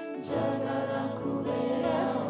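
A woman singing a worship song into a microphone, holding long notes over music. A new phrase starts just after a brief dip at the very beginning.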